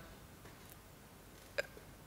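Quiet room tone with one short mouth sound, a brief click-like catch from the speaker, about one and a half seconds in.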